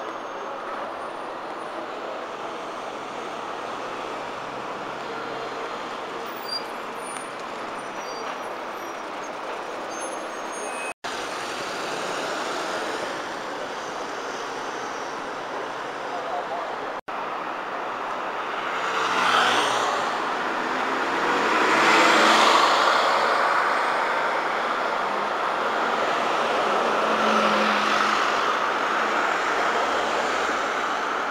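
Busy road traffic: double-decker buses and cars running past, with a louder pass of vehicles close by about two-thirds of the way through. The sound cuts out for an instant twice.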